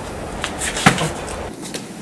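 A blow landing in a savate sparring drill: one sharp smack a little under a second in, with lighter scuffs around it.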